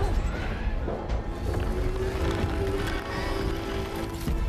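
Tense film score with a long held note coming in about two seconds in, over a deep, steady rumble of the starship's thrusters at full power straining to lift the ship off the ground.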